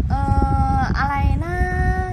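A voice singing in a sing-song way: a long held note, a short one, then another long note pitched a little higher.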